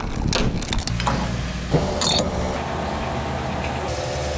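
A key turning in a car's locking fuel-filler cap, with a few small clicks, then a fuel dispenser pump starts up with a steady hum about two seconds in.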